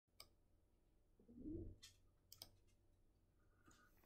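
Near silence: room tone with a few faint clicks and one brief soft low sound about a second and a half in.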